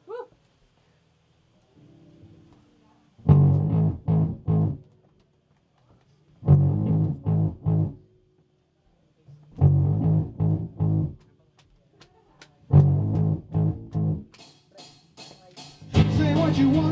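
Electric guitar and bass playing the stop-start opening of a post-punk song: four loud groups of short chord stabs, each group about a second and a half long, separated by near-silent gaps. Faint ticking comes in near the end.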